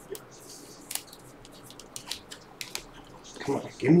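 Glossy trading cards being shuffled one by one through the hands: a scatter of faint clicks and short sliding scrapes as each card is moved from the front of the stack to the back. A man starts talking near the end.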